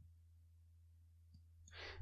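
Near silence with a low steady hum, then a person drawing a breath near the end.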